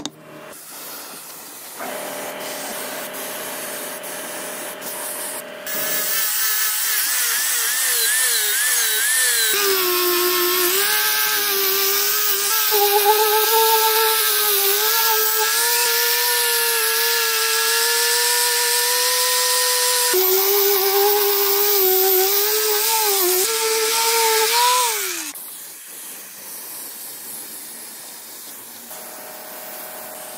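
Angle grinder working a metal part: a loud grinding hiss over a motor whine that wavers and dips as the disc is pressed against the work, then winds down in pitch about 25 seconds in. Before it a quieter, steadier machine tone runs for a few seconds.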